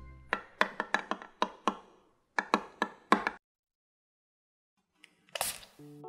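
A thin stirring rod clinking against the glass wall of a beaker of soap batter as it is stirred: a quick run of about eight light clinks, a short pause, then about five more. A brief rush of noise follows near the end.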